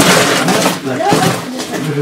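Clothing and boots scraping and rustling against the rock walls of a tight cave passage as a caver crawls through, with handling knocks on the camera and some low voices.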